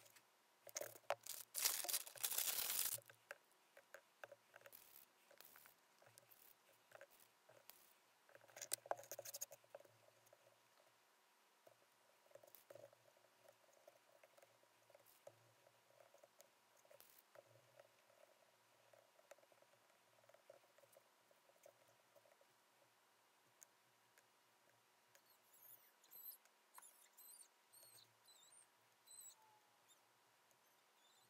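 Faint handling sounds of hand-working clay on a work board: two louder noisy bursts, about a second in and again around nine seconds, then scattered small taps and scrapes, with faint high squeaks near the end.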